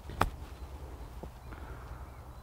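A golf wedge striking the ball on a short chip shot: a single sharp click a fraction of a second in.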